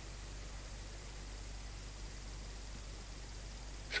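Homemade pulse motor running steadily on battery power: a faint, even hum and hiss with no distinct beat.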